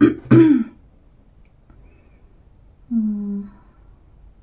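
A person clearing their throat with two quick coughs right at the start, then a short wordless 'mm' from the voice about three seconds in.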